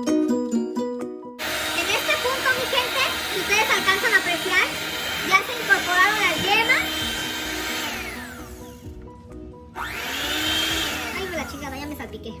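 Electric hand mixer running in a bowl of foamy egg batter, beating the yolks into the whipped whites, over background music with singing. The motor noise starts about a second and a half in and dies away around two-thirds of the way through.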